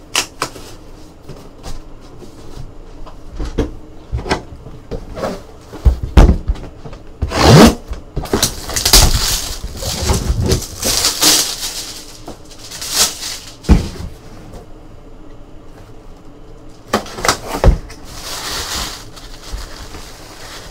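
Handling and unwrapping a boxed item: scattered knocks and handling thumps, then long bursts of crinkling plastic wrap and rustling paper, twice, as the box is opened and tissue paper is pushed aside.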